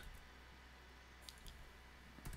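Near silence: room tone, with a few faint clicks about a second and a half in.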